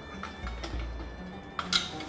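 Metal kitchen tongs clacking as they are taken up, with a faint click about two-thirds of a second in and a sharp, bright clack near the end, over soft background music.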